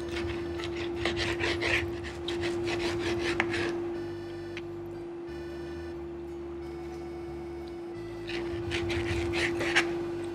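Knife sawing back and forth through roast wagyu rib roast and scraping the plate, in two spells: for the first few seconds and again near the end. Background music with a steady held tone runs underneath.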